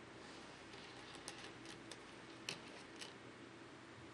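Near-silent studio room tone with a few faint, short clicks, about a second in and again around two and a half and three seconds in.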